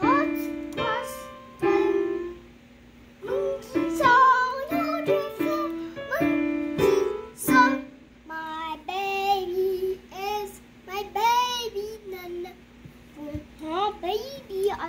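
Digital piano keys struck one or a few at a time: about a dozen scattered notes and chords over the first eight seconds, each ringing briefly. After that a young child sings a gliding, wordless tune.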